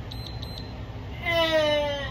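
Two short high beeps from a workout interval timer, about half a second apart, marking the end of a Tabata interval. About a second later comes a woman's long, drawn-out vocal sound that falls slightly in pitch as she finishes a set of sit-ups.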